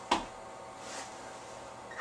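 One sharp knock just after the start, then a faint swish as a squeegee blade is drawn straight down wet window glass.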